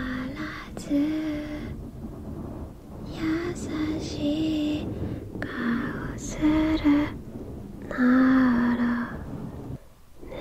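Soft, close-miked female singing of a melody in held notes, phrased with short pauses. Underneath is a continuous rustling rumble of fingertips scratching a fluffy fur microphone cover.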